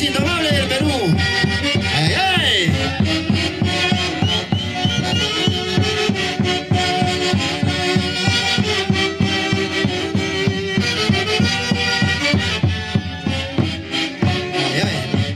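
A live saxophone-led Peruvian orquesta típica plays a brisk festive tune with a steady drum beat, with sustained sax lines and some gliding notes in the first few seconds.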